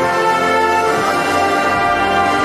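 A volunteer fire brigade brass band playing: full brass and wind sound with held, moving chords, the notes changing right at the start.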